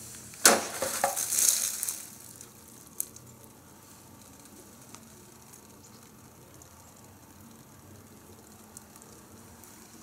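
An 18-inch khukuri chopping through a plastic 2.5-gallon water jug in one stroke: a single sharp hit about half a second in, then a rush of noise for about a second and a half as the jug is split.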